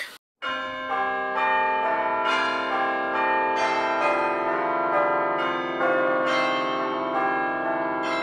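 A peal of bells starting about half a second in, a new note struck about twice a second while the earlier notes ring on over one another.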